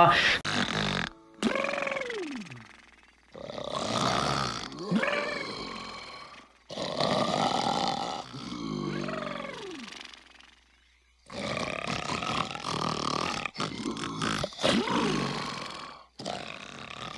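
A large cartoon creature snoring loudly: several long snores of two to four seconds each, with short pauses between them.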